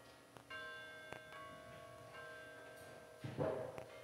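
Bell notes struck one after another, each ringing on after the strike. A short burst of noise about three seconds in is the loudest moment.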